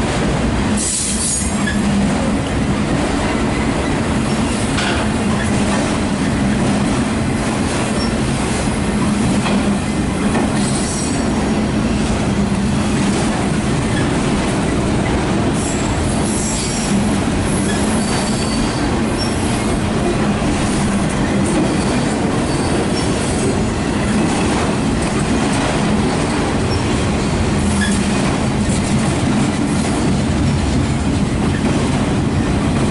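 Loaded autorack freight cars rolling past at close range: a loud, steady rumble and clatter of steel wheels on rail, with brief high wheel squeals now and then.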